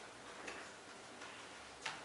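Quiet room tone with a few faint, irregular clicks, the sharpest one near the end.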